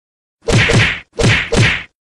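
Edited outro sound effect: four short, loud hits in two quick pairs, each with a pitch that falls away underneath.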